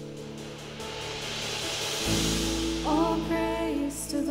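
Live worship band music. A bright cymbal-like wash builds for about two seconds, then a deep bass note and sustained chords come in, and a singing voice starts about three seconds in.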